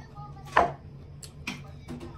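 Metal spoon and fork scraping and clinking against a ceramic bowl during a meal: one louder scrape about half a second in, then a few lighter clicks.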